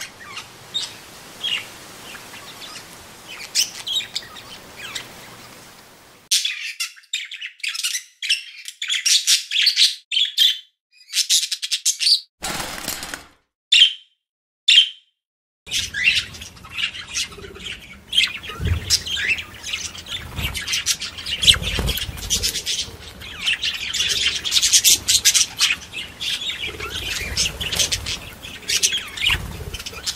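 Small parrots chirping and squawking in many quick, overlapping high calls. The calls are fainter at first, then come in short bursts broken by brief silences, and in the second half become a continuous, busier chatter.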